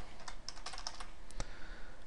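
Computer keyboard keystrokes as a line of code is copied and pasted: a quick cluster of key clicks about half a second in, then a single click a little later.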